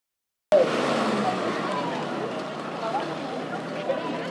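Murmur of distant voices over steady outdoor background noise, starting abruptly about half a second in.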